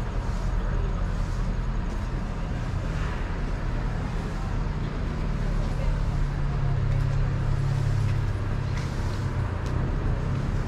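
Street ambience with a motor vehicle engine running nearby. Its low hum grows stronger past the middle and eases off again near the end.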